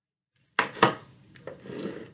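Handling noise from a small corded microphone being moved about: sharp knocks and rubbing, the two loudest knocks about half a second and a second in, with rougher scraping near the end.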